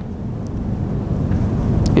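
Steady low rumbling noise with no clear source, rising slightly in level, in the background of a lecture room.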